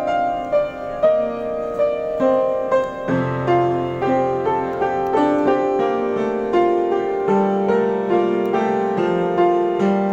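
Street piano played in a slow improvisation: a melody of struck notes, about two a second, over sustained chords, with a lower bass note coming in about three seconds in and a deeper one near seven seconds.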